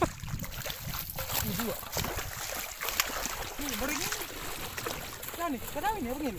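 Splashing of a person running through shallow water, short sharp splashes over a steady wash, with a man's brief wordless calls a few times.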